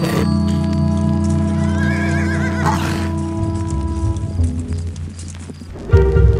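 Background music with long held notes, and a horse whinnying about two seconds in.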